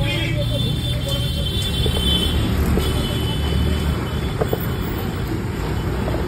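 Steady low rumble of road traffic, with vehicle engines running.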